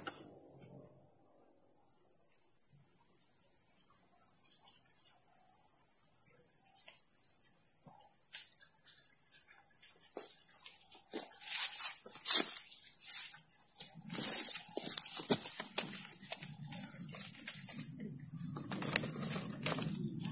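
A steady high-pitched insect drone, with scattered clicks, knocks and rubbing from the phone being handled in the second half.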